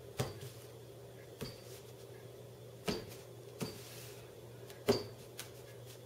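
A deck of playing cards being cut by hand, with packets set down on a felt table: a handful of light taps and clicks, spaced about a second apart.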